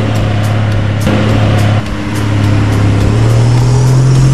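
Toyota LandCruiser engine revving hard under load as it claws up a steep, soft sand bank with its wheels spinning. The engine note steps up in pitch twice as the driver pushes harder.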